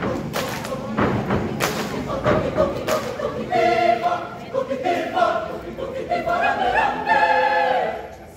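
Mixed choir singing a cappella, with several sharp thumps over the voices in the first three seconds, then full held chords from about three and a half seconds in.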